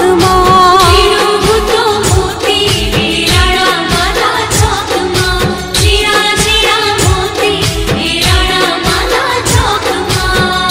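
Female vocals singing a song over an Indian-style backing track with a steady drum beat.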